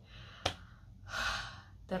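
A woman's audible in-breath between phrases, preceded by a small sharp mouth click about half a second in; speech resumes at the very end.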